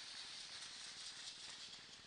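Audience applauding: a faint, steady patter of many hands clapping.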